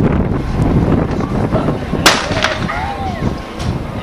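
Starting gun firing a single sharp shot about halfway through to start a 400 m race, with a fainter crack just after it, over steady wind rumble on the microphone.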